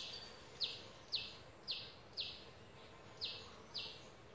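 Short high chirps from a small animal, repeated evenly about twice a second, each note sliding slightly down in pitch, over a faint steady outdoor hiss.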